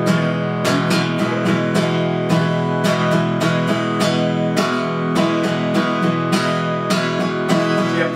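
Martin 0-28 acoustic guitar strummed with all downstrokes in a steady rhythm, two single strums followed by runs of eighth-note strums (1, 2, 3 & 4 &), ringing the same chord throughout.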